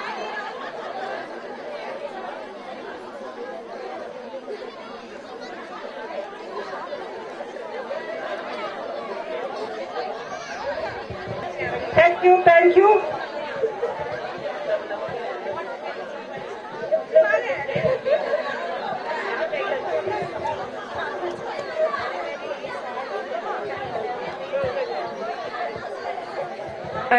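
Crowd of schoolchildren chattering, many indistinct voices at once, with louder voices breaking out about halfway through and again a few seconds later.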